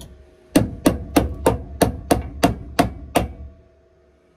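Hammer striking the steel inner sill of a car body, nine sharp metallic blows at about three a second, each with a short ring.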